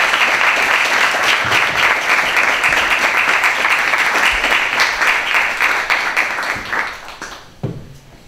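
Audience applauding, a dense clatter of many hands that dies away about seven seconds in, followed by a single knock near the end.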